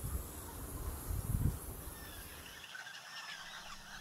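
Faint natural wetland ambience: a steady high insect drone that fades out past the middle, a few faint distant bird calls in the second half, and a low rumble that swells briefly about a second in.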